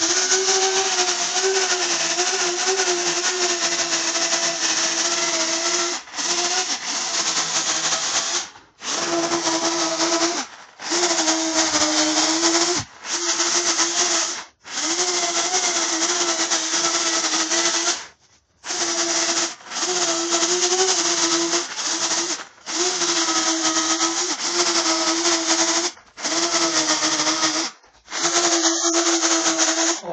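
Electric chainsaw cutting into a fig-wood stump in about eleven runs of one to five seconds, a steady motor whine under the hiss of the chain biting wood, stopping abruptly between cuts.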